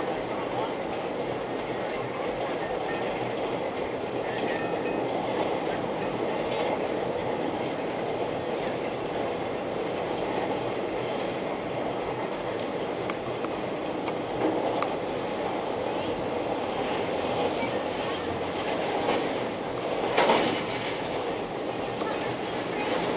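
Double-stack container freight train rolling across a steel trestle viaduct: a steady rumble of wheels on rail. There is a brief louder burst near the end.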